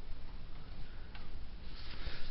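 Hall room tone with a single faint click about a second in, then rustling handling noise from the handheld camera as it is swung round near the end.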